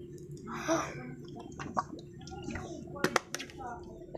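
A person drinking water: gulping and swallowing, with a few sharp clicks just after three seconds in.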